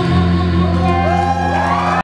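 Live pop band holding a sustained chord over a steady bass note, with singing. Several rising whoops come in over it in the second half.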